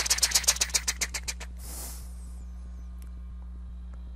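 Rapid run of synthetic click sounds from a physics simulation, one click for each ball collision, about ten a second and thinning out about a second and a half in. A short burst of hiss follows.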